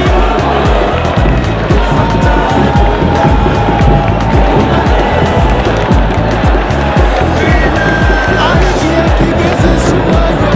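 Background music with a steady, heavy beat.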